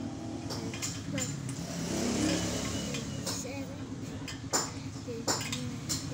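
Background voices with a child's among them, over sharp metal clicks and clinks from hand work truing a motorcycle's spoked wheel; the loudest click comes about four and a half seconds in.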